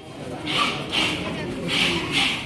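Karate students performing a kata in unison in a large hall: short, sharp bursts of sound about every half second, with voices echoing in the room.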